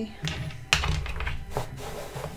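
Dice tossed onto a mouse pad on a table: a few sharp clicks and knocks, the loudest about three-quarters of a second in and another about a second later.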